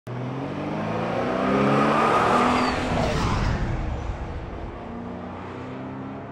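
Car engine sound effect for a show's opening titles: an engine revving, with a rush of passing noise, building to its loudest about two seconds in and then slowly fading.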